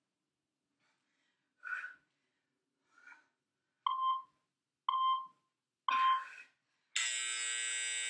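Interval workout timer counting down: three short beeps about a second apart, then a longer buzzer tone near the end, signalling the end of the work interval and the start of the rest break.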